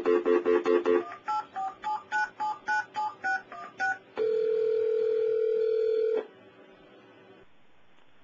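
A voice-activated phone system placing a call. It opens with a pulsed dial tone for about a second, then about a dozen rapid touch-tone (DTMF) beeps as the number is dialled. The ringback tone then rings once for about two seconds.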